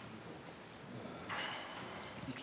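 Quiet room tone in a pause between speech, with a brief soft rustle about a second and a half in.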